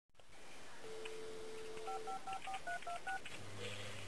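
Telephone dial tone, then seven quick touch-tone (DTMF) keypad beeps as a phone number is dialed. A low steady hum starts near the end.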